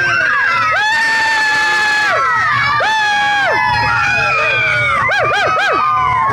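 A group of children shouting and cheering together, several high voices overlapping. There are long held calls in the first half, and a quick run of short rising-and-falling whoops near the end.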